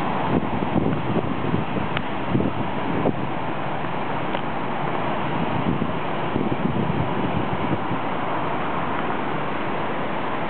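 Jet airliner climbing out after takeoff, its engines a steady, even rushing noise, with wind buffeting the microphone in gusts during the first few seconds.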